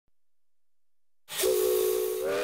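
Steam locomotive whistle blowing, starting suddenly about a second in after near silence: a steady chord of held tones over steam hiss.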